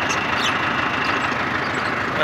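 Massey Ferguson 385 tractor's diesel engine idling steadily, with a couple of faint sharp clicks in the first half second.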